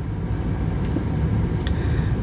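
Steady low rumble of a car's engine and road noise, heard from inside the cabin, with a faint click near the end.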